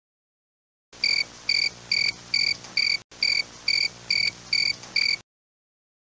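Cricket chirping sound effect, the stock 'crickets' gag for an awkward silence: about ten evenly spaced chirps, a little over two a second, over a faint hiss, starting about a second in and cutting off abruptly.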